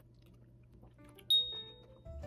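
Faint chewing of a mouthful of noodles. About a second in, soft background music begins. Shortly after, a sudden high chime rings once and fades within about half a second.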